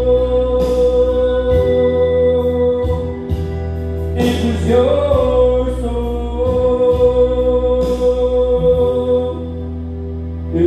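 Music with steady held chords and a man singing along into a handheld microphone, his voice sliding through a wordless phrase about four to five seconds in.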